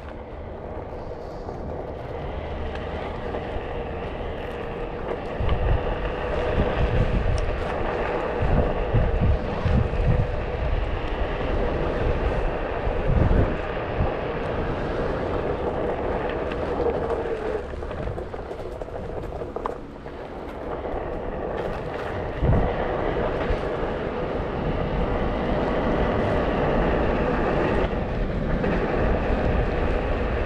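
Onewheel electric board ridden over asphalt: the hub motor gives a steady whine under tyre road noise, getting gradually louder as the ride goes on. Wind rumbles on the microphone in gusts, strongest in the first half and again about two-thirds of the way in.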